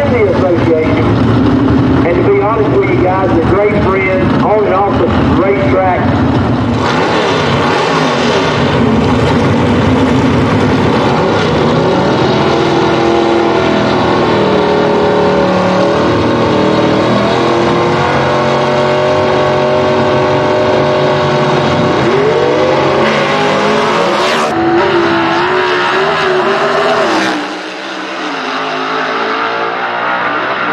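Two A/Gas gasser drag cars' engines, loud throughout: running at the starting line, then revving up and down repeatedly as they stage and launch. The deep engine sound drops away suddenly near the end as the cars pull away down the track.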